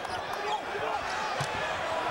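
Arena game sound during live basketball play: a steady crowd murmur with a basketball bouncing on the hardwood court now and then.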